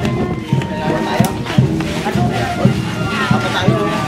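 Brass band playing processional music: long held horn notes over a drum beating about twice a second, with people's voices mixed in.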